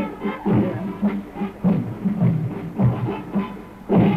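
Marching band playing a march, with drums keeping a steady beat under the wind instruments' tune.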